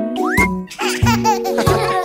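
Bouncy children's song music with a baby giggling over it from about halfway through; a quick rising whistle-like glide comes just before the giggles.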